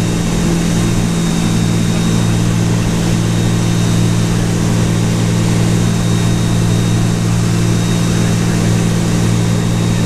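Microlight's propeller engine running steadily at takeoff power through the ground roll and lift-off, one even pitch with no revving, under a steady rush of airflow noise.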